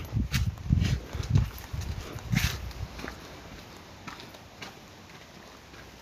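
Brisk footsteps on brick paving, about two steps a second, dying away after about three seconds.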